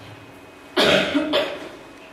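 A person coughing twice in quick succession, about a second in, the first cough longer and louder than the second.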